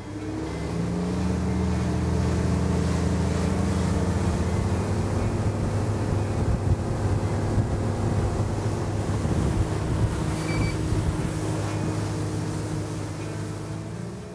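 Suzuki 250 four-stroke outboard motor running the boat at speed, with hull water rush and wind on the microphone. It builds over the first couple of seconds, holds steady, and eases off slightly near the end.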